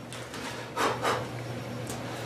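Soft rustling as loose flocking fibres are tipped out of a small box back into a plastic bag: two brief rustles about a second in and a fainter one near the end, over a low steady hum.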